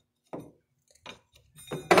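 Wrench and steel hydraulic fittings knocking and clinking against each other as a hose line is loosened: a few short knocks, then a loud metallic clatter near the end.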